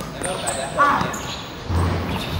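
Basketball play on a hard court: the ball bouncing, with a low thud near the end. A short high-pitched sound about a second in is the loudest moment.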